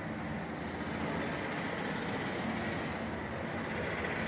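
Steady background noise, an even low rumble and hiss with no distinct events.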